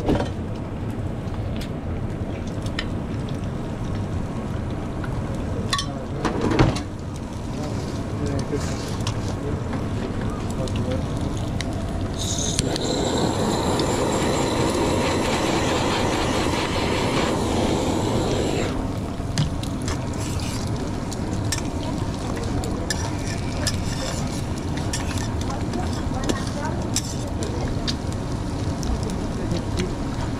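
Eggs sizzling on a flat-top griddle, with a couple of sharp metal knocks in the first seconds. Midway a louder steady hissing roar lasts about six seconds, as a hand-held gas torch is played over the cheese on the omelette.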